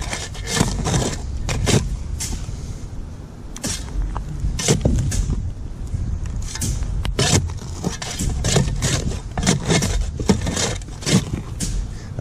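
A steel digging tool scraping and scooping sand from under a concrete sidewalk slab: a quick, irregular run of gritty scrapes and knocks.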